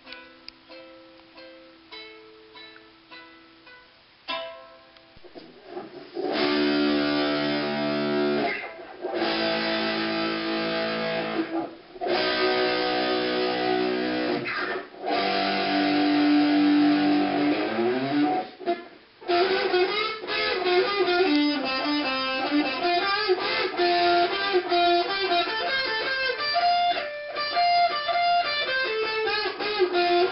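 Electric guitar playing. It starts with a few soft picked notes, then from about six seconds in plays loud held chords broken by short gaps, and from about nineteen seconds in a fast run of single lead notes.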